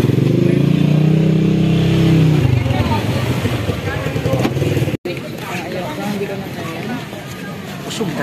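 A motor vehicle engine running loud and close, its pitch sagging as it moves off about two and a half seconds in. After an abrupt cut, street noise with people talking.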